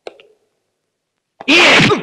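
A short knock, then about a second and a half of dead silence, then a sudden loud shout or fight grunt from a man near the end, rough and breathy, with a rising-and-falling pitch.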